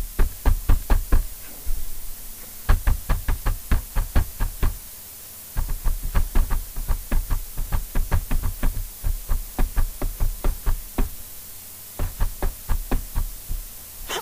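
Runs of quick, even knocks, about four a second, stopping and starting several times with short pauses.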